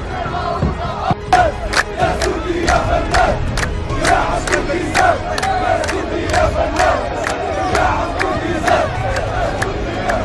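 A crowd of football supporters chanting loudly in unison, with sharp rhythmic hits, about three a second, joining in about a second in.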